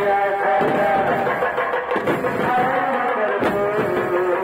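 A man's voice singing a slow, drawn-out melody with long held, wavering notes, accompanied by a few strokes on large barrel drums (dhols).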